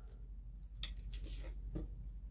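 A few faint clicks and rustles of paint bottles being handled, over a low steady hum.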